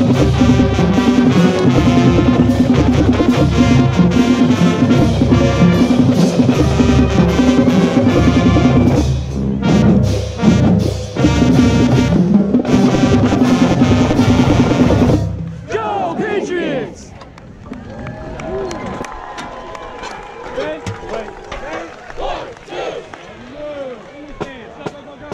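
Marching band playing loudly, brass and drums together, with a set of marching tenor drums (quints) struck right at the microphone. About fifteen seconds in the music cuts off suddenly, leaving quieter crowd chatter and voices.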